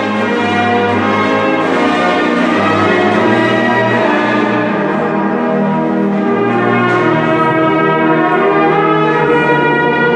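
South African church brass band playing loud, held chords over a steady bass line.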